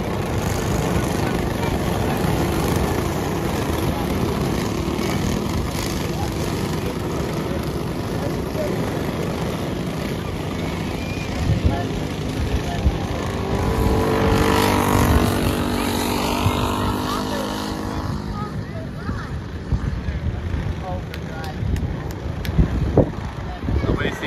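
A pack of racing go-karts running on an oval track, their engines buzzing continuously. The sound swells to its loudest a little past the middle and drops off over the last few seconds.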